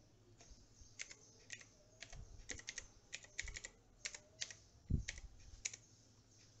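Computer keyboard being typed on: an uneven run of short key clicks, with one heavier thump about five seconds in.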